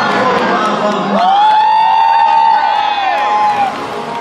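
Outdoor show crowd cheering and whooping. From about a second in to near the end, many voices hold long rising-then-falling "woo" calls over one another.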